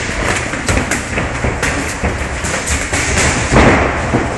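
Boxing sparring: gloved punches landing on gloves and headgear, and feet moving on the ring canvas. A quick, uneven run of impacts, the loudest about three and a half seconds in.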